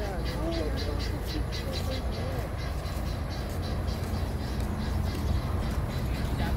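Outdoor ambience dominated by a steady low rumble, with faint voices during roughly the first two seconds and a rapid high ticking over the first three.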